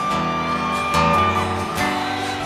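Guitar-led country band playing the opening bars of a song live: strummed guitar chords, with a long held note above them.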